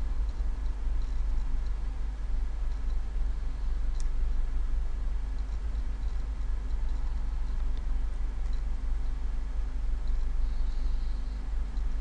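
Light computer-mouse clicks, scattered and faint with one sharper click about four seconds in, over a steady low rumble and hum.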